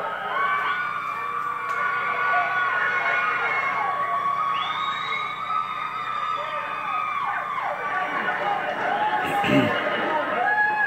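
A group of teenagers screaming and squealing together in celebration, many high voices overlapping in long, wavering held cries.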